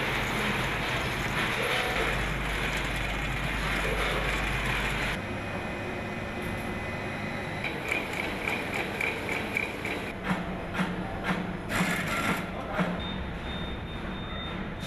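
Food-factory production machinery running: a loud steady hum, then after a cut about five seconds in, quieter machine noise with a quick run of ticking and scattered mechanical clicks.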